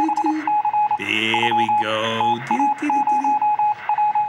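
Broadcast show-opener sound design: an electronic beep at a single pitch, pulsing in short and long bursts like Morse code or a ticker, over a fuller pitched layer with a sweep in the middle.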